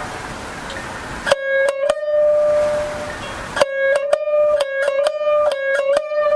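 Solo jiuta shamisen played with a plectrum: after a short pause, three ringing plucked notes come about a second in, then a quicker run of notes begins about three and a half seconds in.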